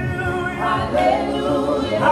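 Gospel praise-and-worship singing by a small group of women and men, holding long notes in harmony.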